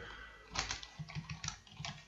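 Computer keyboard typing: a short run of soft keystrokes starting about half a second in.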